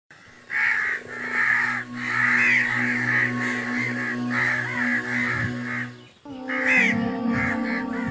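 Birds calling over and over in quick, short calls over a background music bed of steady held notes; the music dips briefly and changes about six seconds in.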